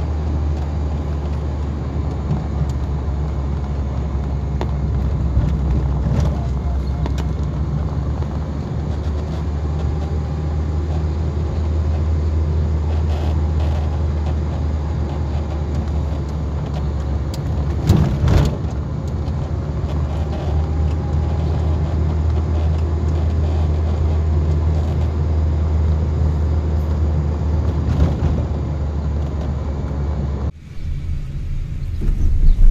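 Steady low rumble of a car's engine and tyres heard from the moving car, with a brief loud knock about two-thirds of the way through.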